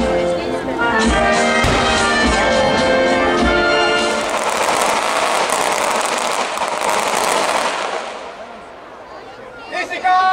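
Brass band music with a steady drumbeat for about four seconds. It gives way to a loud rushing, crackling noise that fades out over the next few seconds.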